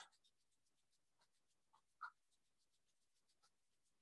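Very faint, dry swishing of palms rubbed briskly together in quick, even strokes to warm the hands.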